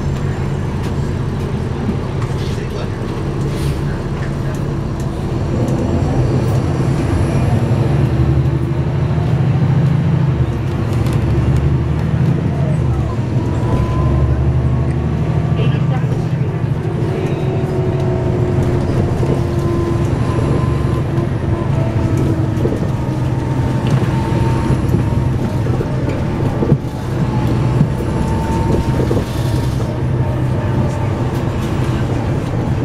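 Inside a moving 2009 NABI 416.15 (40-SFW) diesel transit bus, heard from near the back: a steady low engine and drivetrain drone with road noise, growing louder about six seconds in and holding there, with faint whines gliding up and down above it.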